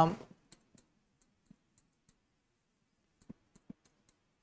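Faint, scattered clicks and taps of a stylus on an interactive whiteboard screen as a pen tool is picked from the on-screen palette and writing begins, with a few sharper taps a little after three seconds in.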